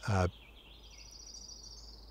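A short spoken 'uh' at the start, then a faint, high songbird trill in the background that steps up in pitch about halfway through and dips slightly near the end.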